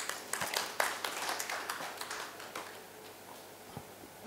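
Scattered audience applause, a thin patter of claps that dies away about two and a half seconds in.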